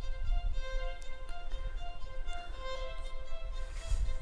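Background music: a violin playing a melody of short, evenly paced notes, over a low steady rumble.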